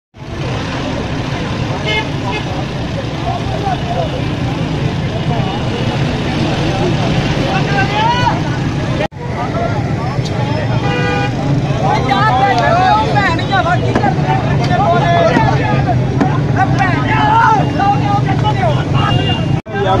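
Busy street: many voices talking over a steady rumble of vehicle engines, with a car horn tooting briefly about two seconds in and again for about a second near the middle. The sound drops out for a moment twice where the footage is cut.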